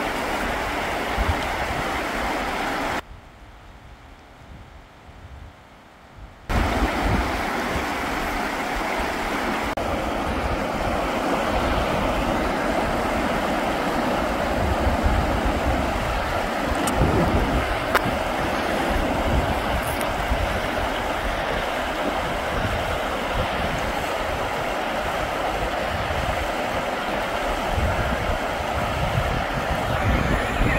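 Fast, shallow river rushing over rocks, a steady loud rush of water with wind buffeting the microphone. The sound drops away to much quieter for a few seconds about three seconds in, then returns.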